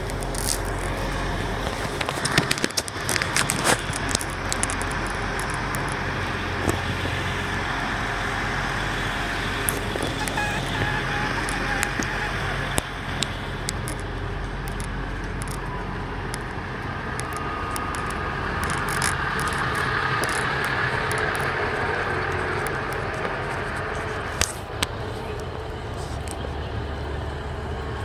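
Diesel multiple-unit passenger train running at a station platform: a steady low engine drone with a whine above it that swells in the second half, and scattered clicks and knocks.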